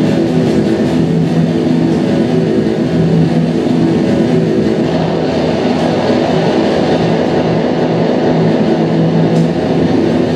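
Live experimental noise music: a loud, dense drone of several low held tones that pulse on and off, over a wash of hiss.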